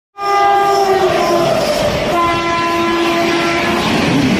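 Indian Railways electric locomotive sounding its horn in two blasts, the second longer and slightly lower, as the train approaches and runs through at speed. Under the horn the passing coaches rumble, wheels clattering over the rail joints.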